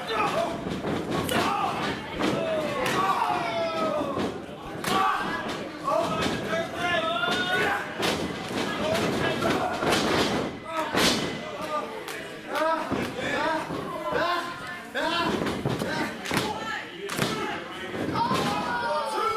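Wrestlers' bodies slamming onto the canvas of a wrestling ring, several sharp thuds spread through the stretch, the loudest about eleven seconds in, over voices shouting in the hall.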